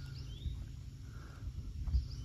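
Outdoor summer ambience: a small animal's short rising chirp repeats about every second and a half over a steady low hum and rumble, with a soft low thump near the end.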